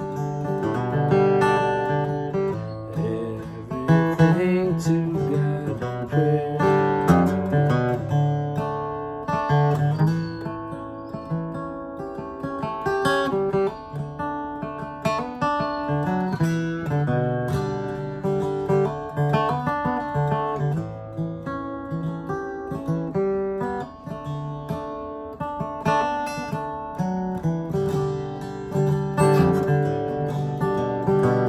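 Steel-string acoustic guitar flatpicked in bluegrass style, playing a gospel hymn melody with bass-note runs and strummed chords.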